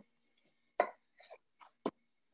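A chef's knife cutting Brussels sprouts in half on a wooden cutting board: a few short knocks, the sharpest near the middle and near the end, with fainter ones between.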